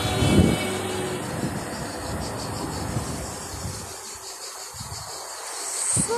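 A motor scooter passes close by on the road, its small engine loudest in the first second and then fading away. Steady outdoor road noise follows, dipping about four seconds in and rising again near the end.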